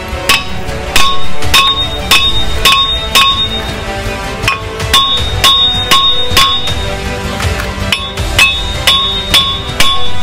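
Hammer blows on a car's front brake disc to knock it loose from the hub. There are about two strikes a second, each with a metallic ring, with a short pause a little after the middle. Background music plays underneath.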